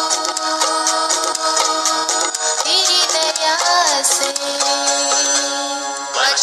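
A Hindi Christian devotional song: a single sung voice holds a long note for about two seconds, moves through a short melodic run, then holds another long note to the end, over a steady beat with keyboard backing.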